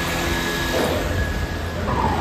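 Steady low mechanical hum of workshop machinery, with a voice trailing off in the first second.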